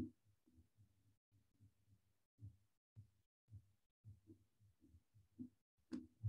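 Near silence over a video call: only faint, irregular low muffled thumps, with brief dropouts to dead silence.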